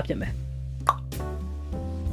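Quiet background music with a steady low bass and held notes. A single short plop sounds about a second in.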